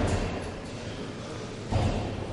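Background noise of a large gym hall, with one dull low thud near the end.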